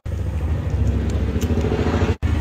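A steady low mechanical drone with a fast flutter, like a small engine or motor running close by.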